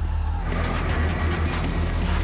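Road traffic noise from a vehicle passing close by, its sound swelling about half a second in, over background music with a steady low drone.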